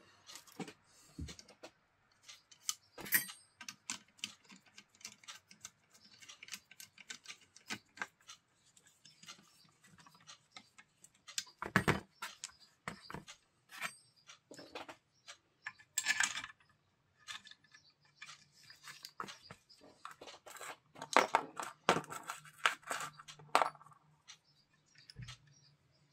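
Small metal parts clicking and clinking against an alternator housing as it is put back together by hand: screws and washers are picked up and set down and the through-bolts are threaded in loosely. The knocks come at irregular intervals, with a few louder clanks along the way.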